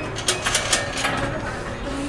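Metal turnstile at an entrance gate being pushed through: a quick run of sharp clicks and clacks in the first second, over distant voices.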